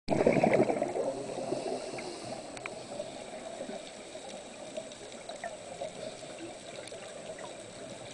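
Muffled underwater water noise picked up by a submerged camera, a steady rushing haze that is louder in the first second, with a few faint scattered clicks.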